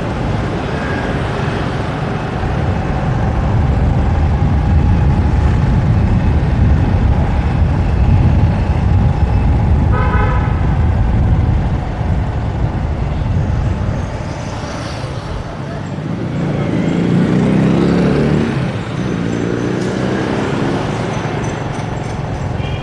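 City street traffic heard from a moving vehicle: a steady low rumble of engines and road noise, with a short vehicle horn toot about ten seconds in.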